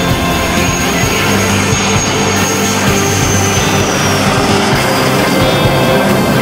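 Background music mixed over the sound of an F-16V fighter jet's engine as it flies low past on approach. A high turbine whine falls slowly in pitch over the first four seconds.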